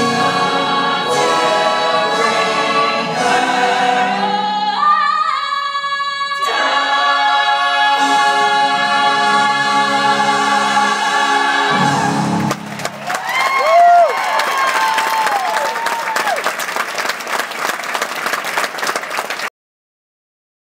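Live stage-musical finale: orchestra and ensemble chorus sustaining a big closing chord. About twelve seconds in, the audience breaks into applause with cheering whoops. The recording cuts off suddenly just before the end.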